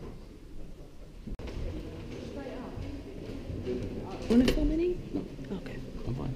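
Indistinct chatter of several people's voices in a room, with one louder voice rising out of it about four seconds in.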